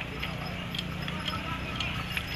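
Crowd of marchers and onlookers talking, with scattered short sharp clicks about every half second.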